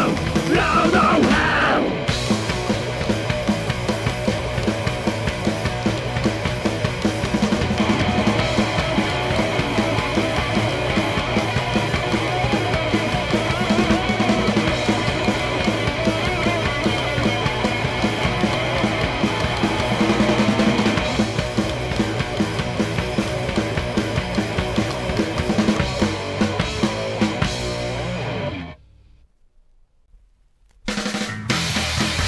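Metallic psychobilly band music, a band with a drum kit playing the closing part of a song, with singing in the first two seconds and instrumental playing after. The music cuts off about a second and a half before the end, leaving a quiet gap.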